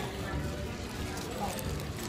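Low steady background noise of a fast-food restaurant dining room, with a faint voice briefly about one and a half seconds in.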